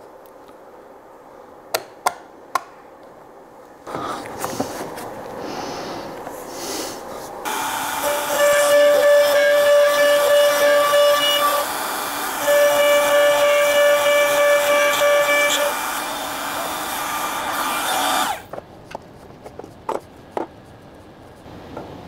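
A trim router mounted horizontally on a homemade CNC starts up about four seconds in and cuts two loose-tenon mortises into the end of a board. It runs with a steady high whine that breaks off briefly between the two cuts, then stops. A few light clicks of clamping and handling come before and after it.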